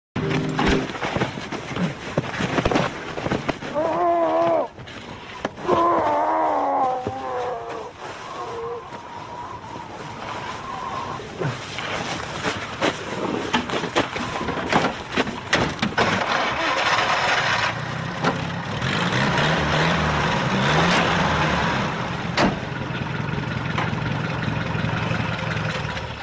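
Vintage car engine idling steadily from about two-thirds of the way in, under a mix of scuffling, sharp knocks and a couple of short raised voices.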